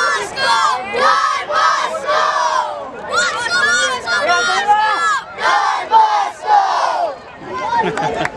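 A team of young footballers shouting together in a chorus of high voices, short shouts one after another: a team cheer on winning the trophy.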